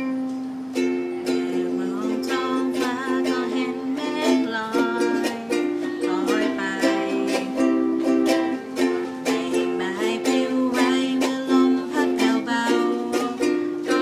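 Two ukuleles strummed together, playing chords in a steady rhythm.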